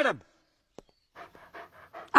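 Dog panting faintly: a run of short, quick breaths in the second half, after a man's voice finishes a word at the start.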